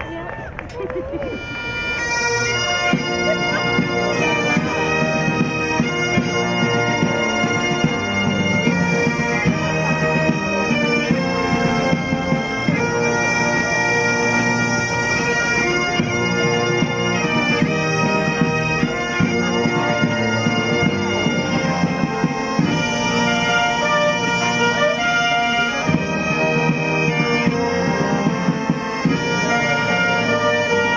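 Highland bagpipes playing together with a military band's cornets and drums. The pipes strike in with a short rising wail, then settle from about two seconds in into their steady drone under the melody.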